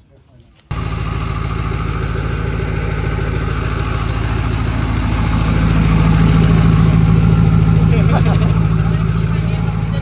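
Duramax turbo-diesel V8 idling, loud and steady; it comes in abruptly about a second in and swells a little in the middle.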